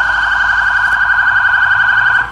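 A police patrol car's electronic siren sounding one steady, high tone with a fast warble.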